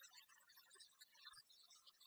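Near silence, with only faint, scattered traces of sound.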